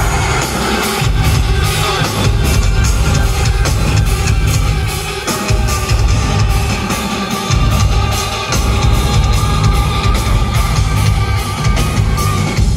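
Rock band playing an instrumental passage live, with electric guitars, keyboards and a drum kit, heard from the audience. The heavy low end drops out briefly twice, around the middle.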